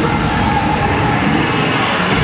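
Cheerleading routine music mix playing loudly over the arena sound system, here a dense, noisy section, with crowd noise.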